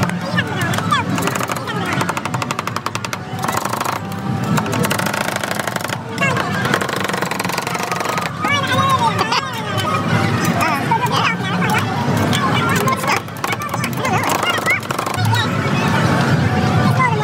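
Two metal spatulas chopping rapidly on a steel cold plate, a fast clatter of metal-on-metal taps as banana is worked into rolled-ice-cream base. The chopping is densest through the first half and thins out later.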